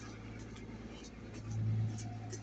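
A car engine's low, steady hum from the street, swelling briefly near the end, with footsteps on the sidewalk.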